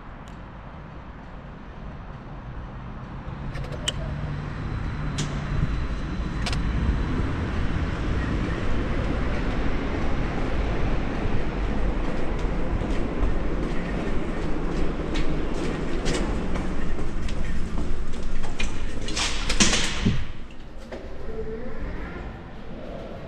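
A scooter rolling over rough paving: a rumble of wheels and frame vibration, with wind noise on the microphone, builds up about three seconds in as it gathers speed. It is broken by scattered sharp knocks. Just before the end comes a dense burst of loud rattling and clattering, then the noise drops.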